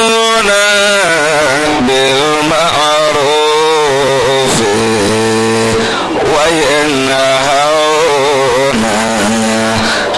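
A man chanting into a microphone in long, wavering melodic phrases, with only brief breaths between them.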